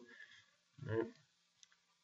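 Faint computer mouse clicks in a near-silent room, with a short spoken 'all right' about a second in.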